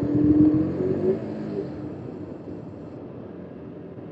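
KTM RC 200's single-cylinder engine running while the bike is under way. The engine note is strong for about the first second and a half, then fades steadily through the rest, leaving a fainter mix of engine and road noise.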